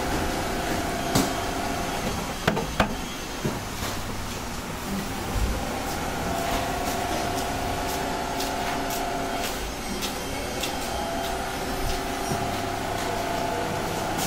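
Steady machine hum with a held tone that fades and returns, likely from a motor-driven grater running, with a few sharp knocks from a steel plate and bowl being handled in the first three seconds.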